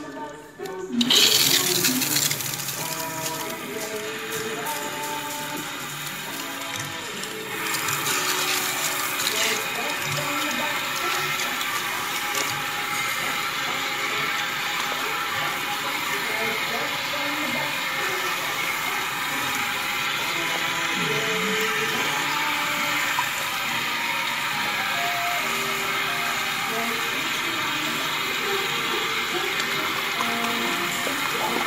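Water from a salon sink spray running onto and through wet hair, a steady rush that starts about a second in and gets louder about a quarter of the way through, with music playing underneath.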